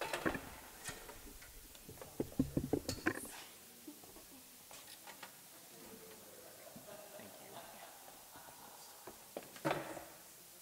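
Percussion gear and other stage items being handled and set down: scattered knocks and clatters, with a burst of rattling about two to three seconds in and another just before the end, and faint murmured voices in between.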